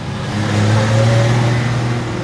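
Heavy truck engine running with a steady low drone and road noise, swelling to a peak about a second in and then easing off as it passes.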